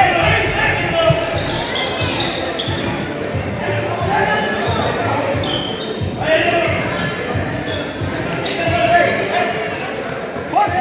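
Futsal game in a reverberant gymnasium: unintelligible voices of players and spectators calling out, with the ball thudding against the wooden floor and feet several times.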